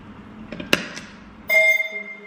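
A few clicks and a sharp knock from handling the microphone and gear. About a second and a half in, a pitched note with several overtones breaks in suddenly from the loop-pedal and effects rig and rings on, fading.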